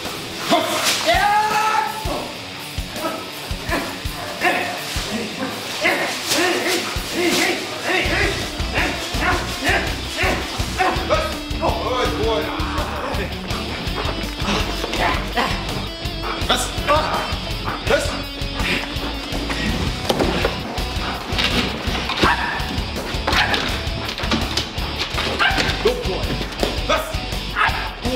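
Background music, with a steady bass line from about eight seconds in, over a Belgian Malinois barking and whining during bite work, with people's voices now and then.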